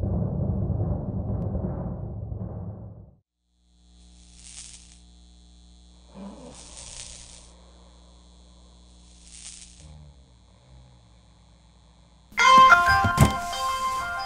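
A low rumbling logo stinger that cuts off about three seconds in, then a faint steady hum with three soft hisses spaced a couple of seconds apart. Near the end, music with a bright chiming melody comes in loudly, with a deep thud just after it starts.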